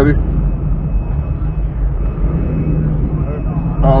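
Car engine running at low speed, a steady low rumble heard from inside the cabin as the car creeps forward and turns.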